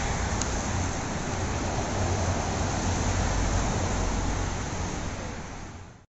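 Steady outdoor noise of wind buffeting the microphone over the hum of traffic on the bridge's roadway, with a deep rumble underneath. It fades out near the end.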